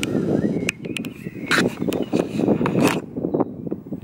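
Wind buffeting an outdoor camera microphone, a steady rough rumble, with several sharp clicks or knocks scattered through it.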